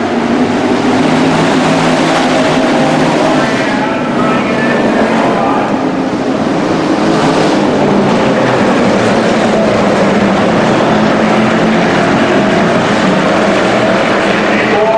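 A pack of hobby stock race cars' V8 engines running hard around a dirt oval, several engines at once in a loud, steady drone.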